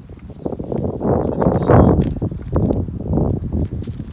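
Close crackling and rustling of soil and dry plant stalks being dug through and handled near the microphone. It swells in the middle and eases off again.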